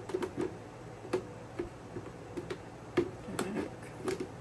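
Light clicks and knocks of a plastic egg storage box's trays being handled and fitted together, with a sharper knock about three seconds in.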